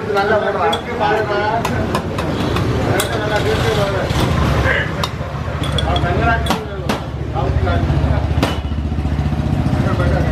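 Sharp clinks of glass tumblers and steel mugs being handled on a steel counter while tea is made, over background chatter and a low steady rumble that grows louder near the end.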